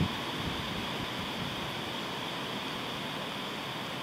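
Steady outdoor background noise, an even hiss with no distinct events.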